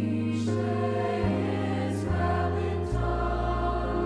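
Mixed high school choir singing, holding sustained chords that shift about once a second, with a few sharp sung 's' sounds.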